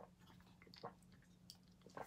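Near silence with a few faint wet mouth clicks and lip smacks, the sound of tasting a protein shake just swallowed.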